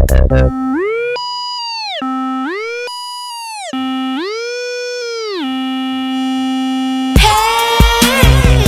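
A bare synthesizer tone in an electronic dance track's breakdown, gliding up an octave, holding, and sliding back down twice with no beat under it. The full dubstep beat comes back in loudly near the end.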